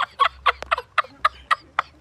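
A man laughing hard in a rapid run of short, cackling bursts, about five a second.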